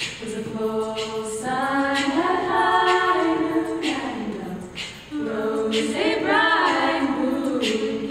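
Women's a cappella group singing close harmony in held chords, in two phrases with a short dip about five seconds in.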